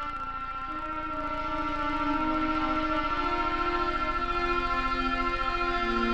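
Analog synthesizer music from a Synthi AKS: a steady high drone held throughout, with sustained lower notes that step to new pitches every second or so over a fast low pulsing, growing a little louder about two seconds in.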